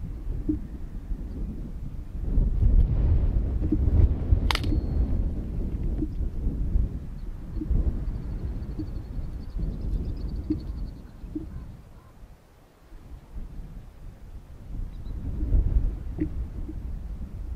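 Wind gusting over an outdoor microphone: a low, rumbling buffet that swells a few seconds in and dies away briefly past the middle before picking up again near the end. A single sharp click about four and a half seconds in, and a faint high warble a little after halfway.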